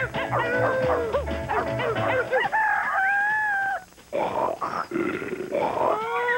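Music with a bass beat under wailing, howl-like vocals. The beat drops out about two seconds in, leaving long drawn-out howls, then a brief break near the middle before more wailing.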